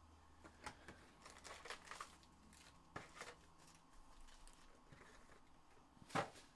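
Faint crinkling and rustling as trading-card packs are pulled out of their cardboard box and handled, with scattered sharp crackles and clicks, densest about one and a half to two seconds in.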